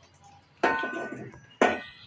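Two sharp metallic clanks about a second apart, each ringing briefly, from steel cookware being handled.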